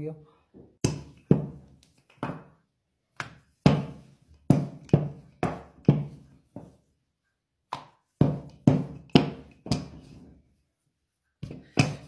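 A wooden rolling pin knocking on a countertop as dough is rolled out thin. The sharp wooden knocks come two or three a second, in runs with short pauses between them.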